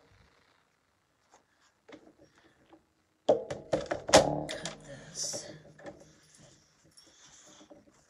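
A plastic paper trimmer is set down and positioned on a worktable: a cluster of knocks and clatter a little past three seconds in, then a softer rustle as paper slides across it.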